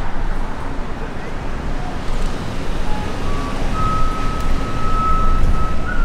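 Outdoor city traffic noise with a steady low rumble. About halfway through, a few short high tones step up in pitch and settle into one steady high-pitched tone that holds to the end.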